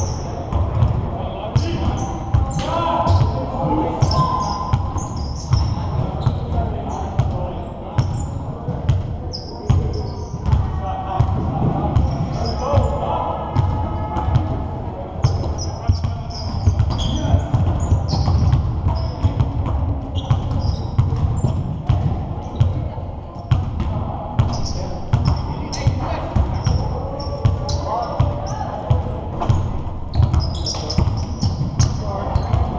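Basketballs bouncing on a hardwood gym floor in a pickup game, with repeated thuds throughout, sneakers squeaking in short high chirps, and players' voices, all echoing in a large gymnasium.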